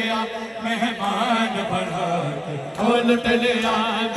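A noha, a Shia lament, chanted by male voices through a public-address system, the sung line moving in small pitch steps.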